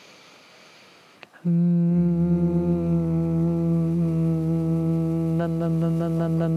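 A soft breath drawn in, then from about a second and a half in a steady, sustained closed-lip 'mmm' hum: a voice warm-up exercise done on abdominal breath. A second, lower voice joins about half a second after the first, and near the end the hum starts to pulse several times a second.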